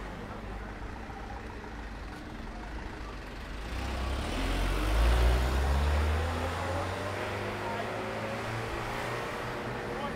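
A light box truck driving past close by: its engine sound swells from about three and a half seconds in, is loudest around five seconds, then fades slowly, over a steady background of street traffic.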